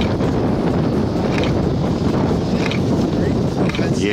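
Wind buffeting an outdoor camera microphone: a loud, steady low noise, with a few brief faint higher sounds scattered through it.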